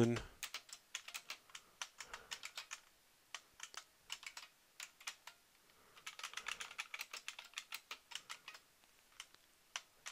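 Computer keyboard being typed on in quick runs of keystrokes, with short pauses between runs.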